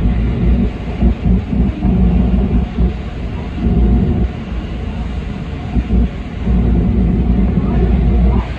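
JR 313-series electric train running through a tunnel, heard from inside the car: a loud, steady rumble of wheels on rail and running gear.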